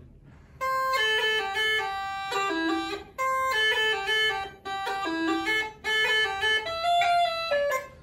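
Uilleann pipes played solo, the chanter sounding a short melodic phrase of a slide that is played twice, with crisp breaks between the notes.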